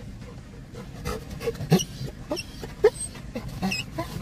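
A dog giving short, high-pitched excited cries, about five of them spread across four seconds, over a low steady rumble of the car.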